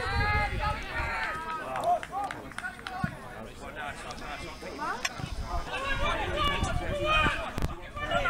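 Raised voices shouting across a grass football pitch during open play, in two spells: at the start and again in the second half, with a few short knocks of the ball being kicked in between.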